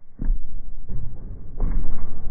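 Running footfalls of a pole vaulter thudding on an indoor turf runway during a short approach: a few heavy steps, the last and loudest near the end, over a low rumble.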